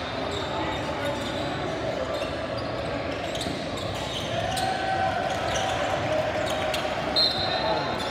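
Basketball game on a hardwood court: the ball bounces and sneakers squeak amid players' and spectators' voices, with a brief high-pitched squeak about seven seconds in.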